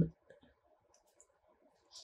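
Faint small clicks and soft handling noise from a metal crochet hook working cotton yarn in single crochet, with a slightly sharper click near the end, after which the sound cuts off suddenly.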